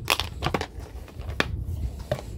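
Hard plastic case being handled and closed: a few sharp plastic clicks and knocks, the loudest one a little after the middle, over light handling rustle.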